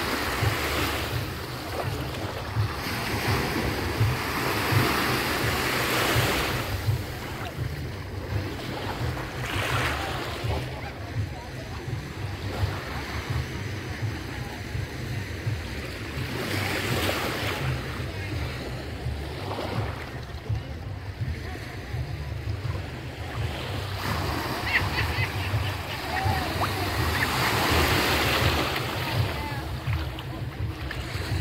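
Small waves lapping and washing over the sand and rocks at the shoreline, swelling and easing every few seconds, with wind buffeting the microphone in a steady low rumble.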